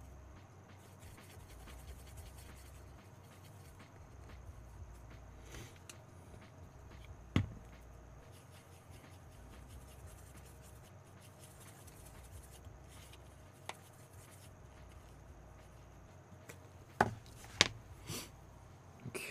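Small paintbrush mixing acrylic paint on a plastic palette: quiet, soft rubbing and dabbing, with a sharp tap about seven seconds in and two louder knocks near the end.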